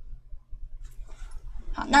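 Faint, scattered rustles of an ink brush on paper over a low steady hum, then a woman starts speaking near the end.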